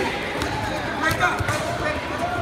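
Voices of spectators and coaches mixing in a large gym hall, with a few sharp knocks and a dull thud among them.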